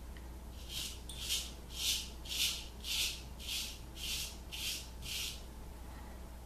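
Straight razor scraping stubble off a lathered jaw and neck in short, even strokes, about nine of them at roughly two a second.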